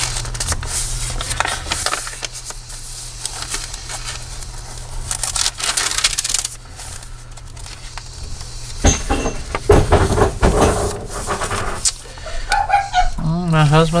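Paper pages of a handmade journal being turned and handled: rustling and flapping of heavy paper and cardstock in repeated bursts, with a few soft knocks.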